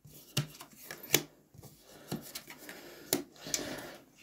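Playing cards being flipped face up onto other cards on a tabletop: a few light, sharp card snaps with soft sliding in between, the sharpest about a second in and about three seconds in.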